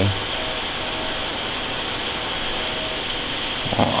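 Steady room noise: an even hiss like a fan or air handling running, with a faint thin tone coming and going a few times.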